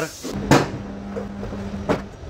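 Two sharp plastic knocks about a second and a half apart, over a steady low hum: a primed car front bumper cover being pushed onto its mounts and clipped into place.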